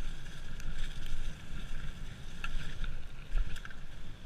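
Wind buffeting the microphone and knobby tyres rolling over a dirt trail as a mountain bike rides fast downhill, with short clicks and rattles from the bike over bumps.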